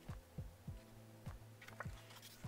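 Quiet background music: a soft, deep kick-drum beat over a low sustained hum, with a few faint clicks near the end.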